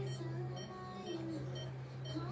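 Background music playing, over a steady low hum, with faint short high beeps repeating about twice a second.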